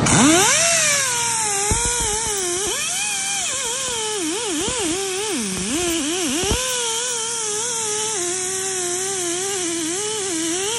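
Pneumatic die grinder with a wire wheel brush scrubbing rust off a car's wheel hub face: a high whine over a steady hiss of air. Its pitch dips several times as the brush is pressed against the hub, then holds fairly steady near the end.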